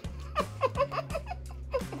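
A woman laughing in a run of short repeated bursts over steady background music.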